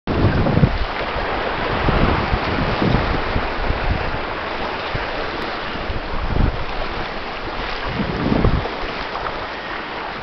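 Strong wind buffeting the microphone in gusts, over the steady rush of water past the hull of a small sailboat moving fast downwind.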